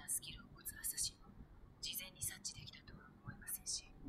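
Faint, whispery, hiss-like speech: the anime episode's dialogue playing quietly with its audio modified, so that the words come through mostly as sibilant bursts.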